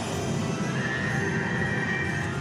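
Dark ride soundtrack playing music and sound effects over the low rumble of the ride car, with a long high held note starting about a second in.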